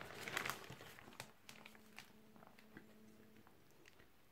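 Faint rustling and light taps of cardboard trading cards being handled and laid down on cloth, mostly in the first second or so, then close to near silence.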